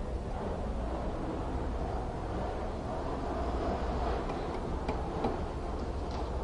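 Hand-turned coax cable prep tool being worked around the end of a coaxial cable, its blade scraping into the jacket to score it without cutting through, with a few light clicks in the second half, over a steady low hum.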